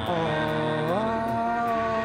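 A single long held note from a live rock band, sliding up in pitch about a second in and then holding steady.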